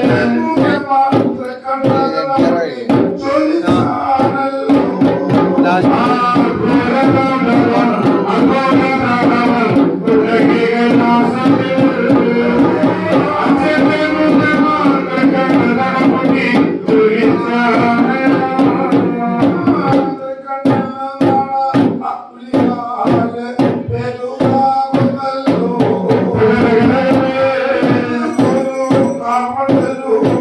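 Kalam pattu temple music: ritual singing over a steady beat of hand-played drums. About twenty seconds in, the sustained singing drops away and the drums go on in sharper, more separate strokes before the fuller sound returns near the end.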